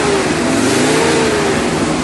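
Car engine revving sound effect over a loud rushing noise, the engine note rising and falling.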